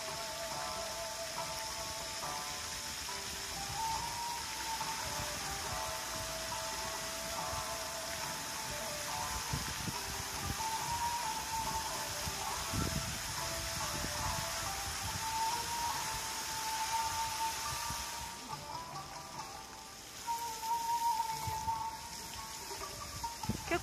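Music playing over loudspeakers for a fountain show, a single melody line, over the steady hiss of fountain jets spraying water. The hiss eases off for a few seconds near the end.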